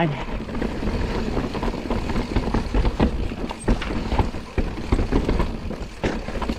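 Forbidden Dreadnought mountain bike riding down a rough, stony forest trail: tyres rumbling over dirt and rock, with frequent sharp knocks and rattles as the bike hits stones and roots.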